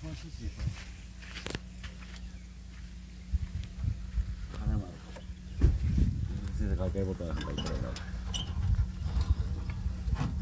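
Low, indistinct voices of people working under a vehicle, with a few sharp clicks and knocks of hand work on the underbody, over a steady low rumble.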